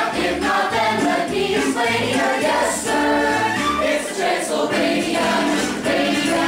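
A show choir singing over an instrumental backing track with a bass line.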